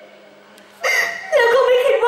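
A woman's high, wavering voice through the stage microphone begins just under a second in. It comes in long, drawn-out vocal phrases with no clear words, over a faint steady hum.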